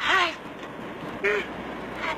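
A person's short vocal sound right at the start, its pitch dipping and then rising, followed by a brief "mm" a little over a second in.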